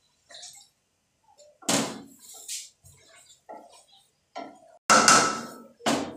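Water poured into a hot aluminium kadai of masala-fried vegetables, sizzling in two loud hissing bursts, about two seconds in and a louder one near the end, with a few light utensil knocks between.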